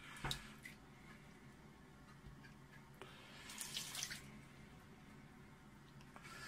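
Thin stream of tap water running into a stainless steel sink, splashing into the soapy water covering a submerged telescope mirror. It is quiet and steady, and the splashing grows louder for about a second around three seconds in.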